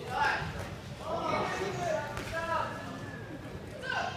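Raised voices shouting at ringside during a boxing bout, in several short calls over a steady background of crowd noise.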